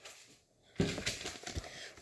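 Paper-and-plastic sterilization peel pouch and cardboard instrument protector handled, a soft crinkly rustle with a few small clicks that starts a little under a second in.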